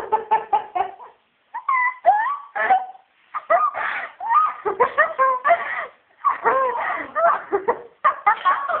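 People laughing and giggling, with rapid bursts of laughter and high, gliding vocal sounds in runs broken by short pauses.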